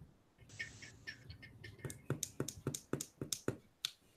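Quick strokes on drawing paper: a brief scratch about half a second in, then a fast run of about a dozen sharp strokes, roughly five or six a second, from a drawing hand working rapidly over a pencil sketch.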